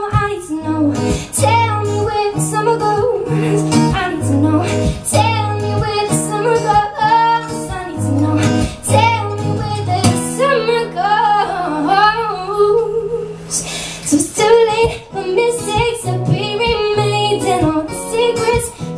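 Female singer performing live with acoustic guitar accompaniment, the voice carrying a wavering, mostly wordless melodic line over a repeating guitar pattern. About ten seconds in the guitar holds one chord for a few seconds while the voice runs up and down.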